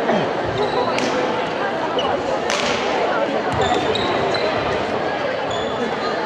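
Badminton rally: several sharp racket hits on the shuttlecock and short squeaks of shoes on the gym floor, over a constant murmur of spectator chatter.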